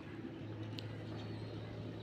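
A low, steady machine hum, like a motor running, starts about half a second in, with a few faint ticks over it.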